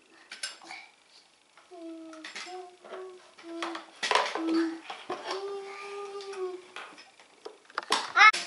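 Plastic toy doctor-kit pieces clicking and clattering as they are rummaged through in a plastic case, with scattered sharp knocks. Through the middle runs a short tune of held notes, the last one long.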